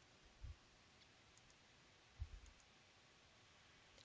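Near silence broken by two faint, dull clicks, about half a second in and again just past two seconds: a computer mouse being clicked.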